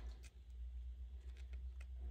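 A few faint light clicks of two sawn halves of an agate nodule tapping together and against fingertips as they are handled, over a steady low hum.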